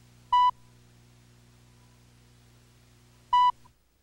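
Two short electronic tone beeps, each a fraction of a second long and about three seconds apart, over a faint steady low hum: the cue beeps on a commercial videotape's slate, counting down to the start of the spot.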